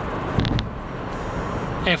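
Steady road and drivetrain noise heard inside the cabin of a Subaru XV Crosstrek with a Lineartronic CVT as it slows down at freeway speed, with a brief click and low thump about half a second in.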